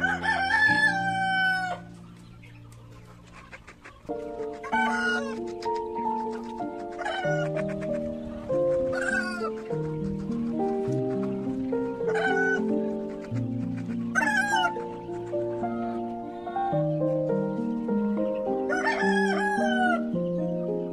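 Background music with chicken calls over it: a long call at the start, then shorter calls that fall in pitch every two to three seconds, and another long call near the end.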